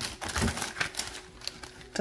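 Plastic packaging being handled: a run of quick, irregular clicks and crinkles as a clear zip bag holding nail drill bits in a plastic holder is taken out of the box.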